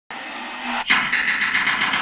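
Intro sound effect over the title card: a rising rush of noise, then from about a second in a fast, even buzzing rattle of about nine pulses a second, like an engine revving.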